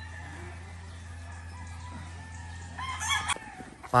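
A gamefowl rooster crows once, briefly, about three seconds in, over a steady low hum.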